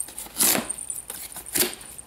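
Small jingle bells on a reindeer-antler headband jingling as the wearer's head moves, with two short jingles about a second apart.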